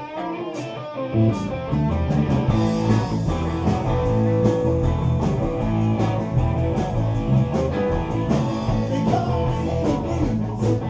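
Live blues-rock band playing, with electric guitars over bass guitar and drums. The low end drops away for about the first second, then the full band comes back in.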